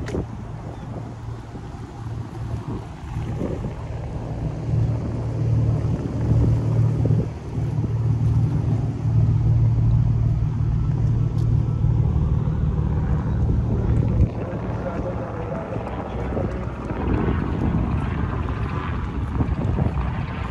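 A boat's engine droning steadily, swelling a few seconds in and easing off in the last third, with wind on the microphone. People talk as they pass near the end.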